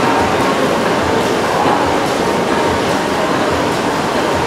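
Old stationary hot-bulb engines running, a steady mechanical clatter with low thuds about twice a second.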